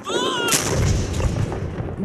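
A towed artillery howitzer firing: after a brief high wavering tone, a single sudden loud blast about half a second in, followed by a long low rumble.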